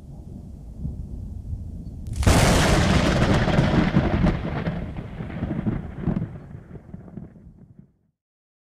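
A thunderclap sound effect: a low rumble, then a sharp crack about two seconds in, followed by rumbling that fades away over the next five seconds.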